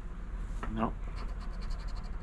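A metal coin scraping the coating off a scratch-off lottery ticket in quick, repeated short strokes.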